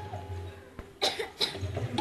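A person coughing twice, short and sharp, the two coughs a little under half a second apart about a second in.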